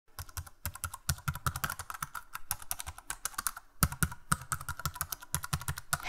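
Fast typing on keys: a run of sharp clicks, several a second, with a brief pause a little past the middle.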